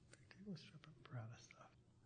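Near silence, with a faint, low murmured voice and a few small clicks, like someone quietly thinking before answering.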